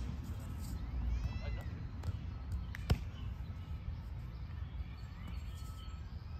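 A volleyball struck once by hand, a single sharp smack about three seconds in, over low wind rumble on the microphone.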